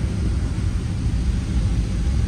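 Steady cabin noise of a moving Fiat Uno on a rain-soaked road: low engine and road rumble with an even hiss of tyres on the wet surface.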